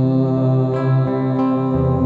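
Acoustic guitar playing live, a chord ringing on with new notes picked in over it about a second in and again shortly after.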